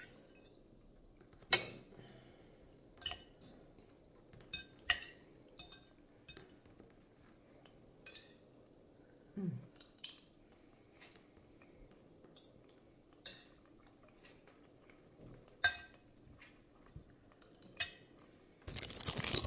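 Metal fork and spoon clinking and scraping against a plate of rice as someone eats, in scattered sharp taps a second or two apart.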